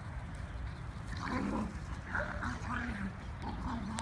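Small puppies giving short, high yips and barks as they play-fight, a run of several calls starting a little over a second in.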